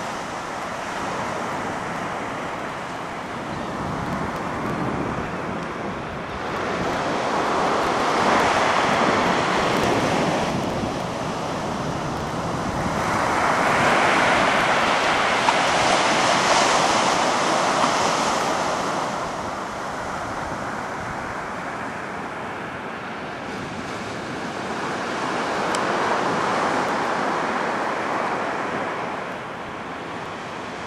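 Ocean surf breaking and washing up a sandy beach, a steady rush that swells three times as waves come in.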